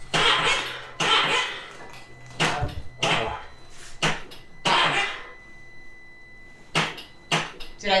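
A Can-Am Maverick X3 failing to start on a dead battery: the ignition is on and a low hum runs for the first few seconds, with a series of short, irregular sharp bursts, but the engine never fires.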